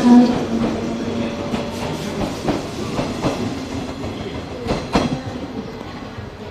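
JR 113-series electric train pulling out of the station, its wheels clacking over rail joints in quick pairs of clicks. The sound grows fainter as the train draws away.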